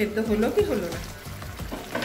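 Elephant yam curry sizzling and simmering in a kadai as its glass lid is lifted off, under background music with a held melody.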